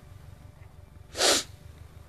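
A single short, noisy burst of breath close to the microphone about a second in, like a sharp exhale or sneeze, over faint steady hiss.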